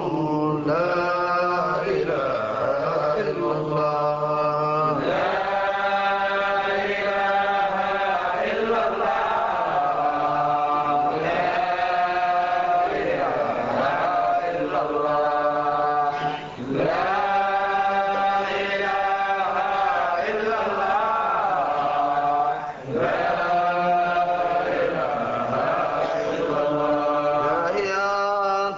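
Arabic Sufi dhikr chant: voices sing long, melismatic held lines over a steady low drone. The chanting breaks off briefly twice, in the second half.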